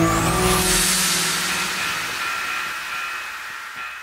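Logo sting sound effect: a rising whoosh that peaks about half a second in over held tones, then slowly dies away.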